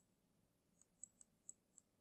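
Near silence broken by a handful of faint, sharp computer mouse clicks in the second half.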